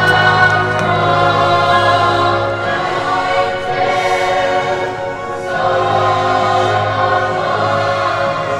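A choir singing long held chords, recorded live in a large open venue, with a dip in loudness a little past the middle.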